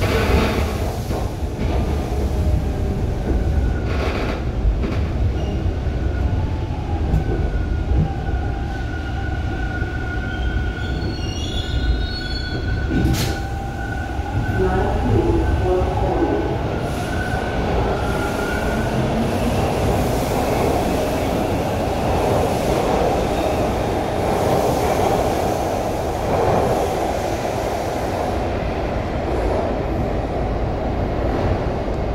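TTC T1 subway car running on the rails with a steady low rumble as it slows into a station. A thin, steady high squeal sounds for about ten seconds midway, with a single sharp click about 13 seconds in.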